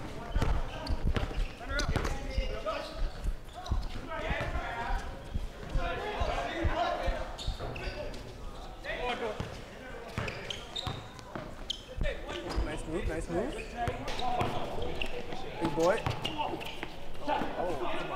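A basketball being dribbled on a hard outdoor court, with repeated bounces and thuds throughout, over the voices of players and onlookers.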